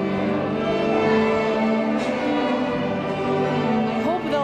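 Children's string orchestra of violins, cellos and double basses playing slow, sustained chords together.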